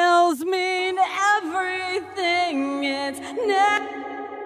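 A solo sung vocal track with held notes and pitch slides, played through the Inktomi modulation-and-reverb plugin. The singing stops shortly before the end and a reverb tail rings on.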